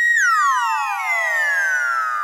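Electronic sound effect: a high tone that glides steadily downward, with many echoing copies falling one after another in a cascade.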